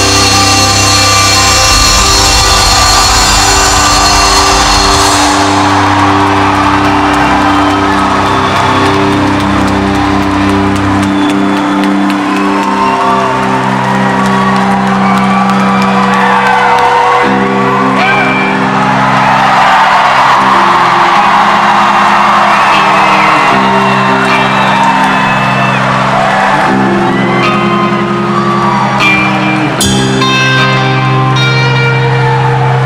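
Live rock band's full-volume music breaking off about five seconds in, leaving long held notes that change chord every few seconds. Over them a large crowd cheers and whistles, echoing in the hall.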